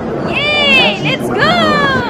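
Two high-pitched squeals from a young child: the first rises and falls, the second starts high and slides down.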